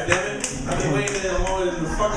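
A few scattered audience claps, the last of the welcoming applause, over voices talking.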